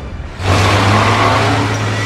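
A vehicle engine running hard under load, straining against a chain hitched to a stump buried in the ground. It swells up after a short quieter moment about half a second in and holds a steady low drone.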